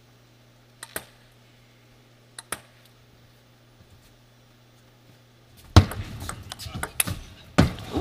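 A table tennis ball ticking lightly on a hard surface, two quick double bounces about a second apart, over a steady hall hum. About six seconds in comes a louder run of thuds and clatter, with a heavy knock near the end.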